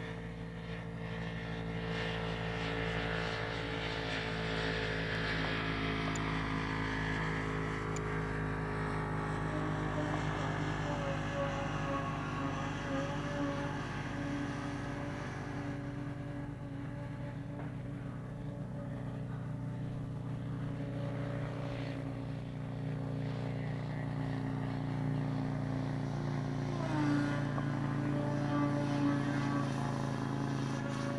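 Electric motor and propeller of a Skywing 55-inch Edge radio-controlled aerobatic plane, a steady multi-toned drone that shifts in pitch with the throttle during tumbling manoeuvres, with a short upward glide near the end.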